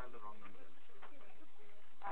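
A faint, muffled voice over a telephone line, much quieter than the speech around it.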